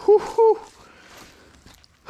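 A man's voice giving two short, high-pitched excited vocal sounds in quick succession near the start, then only faint background.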